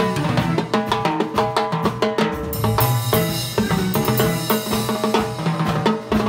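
A live band playing with busy Latin percussion: timbales and cowbell struck rapidly with sticks alongside a drum kit, over sustained pitched instruments, with a dense run of strikes in the first half.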